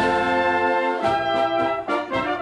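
Wind band with the brass in front, trumpets, flugelhorns, horns and tuba, playing a polka in held brass chords over a bass line. Drum hits fall about once a second.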